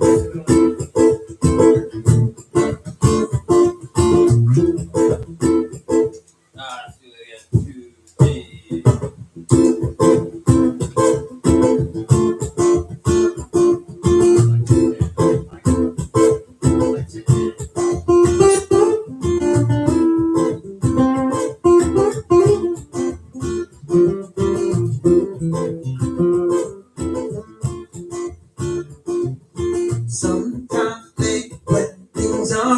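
Acoustic guitar strummed in a steady rhythm. The strumming drops away to a few lighter notes about seven seconds in, then picks up again.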